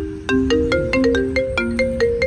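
Smartphone ringing with a marimba-like ringtone: a steady melody of bright mallet notes, about four a second.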